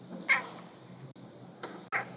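Two short, high-pitched, voice-like calls, the first about a third of a second in and the second near the end.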